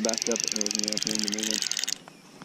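Drag of a Shimano Exsence DC baitcasting reel clicking rapidly and evenly as a large longnose gar takes line against it, with the drag backed off a little. The clicking cuts off suddenly at the end.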